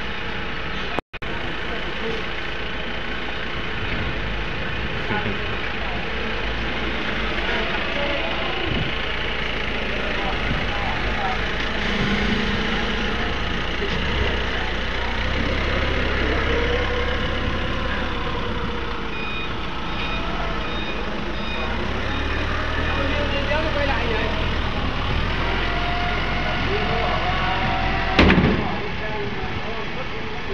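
Forklift engine running steadily as it takes on and carries a load, its low rumble growing stronger partway through, under the chatter of workers' voices. A single sharp knock sounds near the end.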